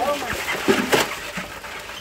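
Live land crabs being shaken out of a cloth sack into a large aluminium pot: scattered scraping clicks and one sharp clatter about a second in, with voices in the background.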